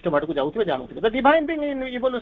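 A man talking steadily, his voice continuing without a pause.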